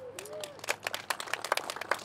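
Irregular sharp clicks and taps, many in quick succession, with a faint wavering tone in the first half second.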